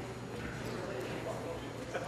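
Murmur of many overlapping voices in a large legislative chamber, no single speaker clear: members talking among themselves while the sitting is held up.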